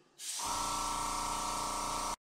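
Airbrush blowing a steady stream of air across wet acrylic paint, a continuous hiss over the even motor hum of its compressor. It starts about a fifth of a second in.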